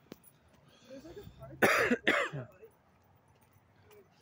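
A man coughing: two loud coughs in quick succession about halfway through, after a second or so of quiet.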